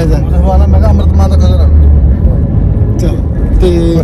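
Low, steady rumble of a car driving, heard from inside the cabin, strongest in the first two seconds, with voices over it.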